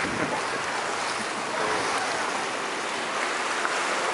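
Steady wash of small sea waves breaking on a rocky shore, mixed with wind on the microphone.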